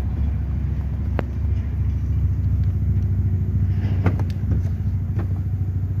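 Steady low engine rumble of an idling vehicle, with a few sharp clicks; the last two, about four and five seconds in, come as the SUV's rear liftgate is popped open.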